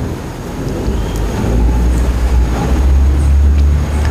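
A loud, low rumble that swells about a second and a half in and holds.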